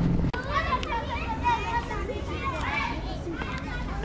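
Children's voices chattering and calling, many at once, in the background. A low steady hum cuts off abruptly just after the start.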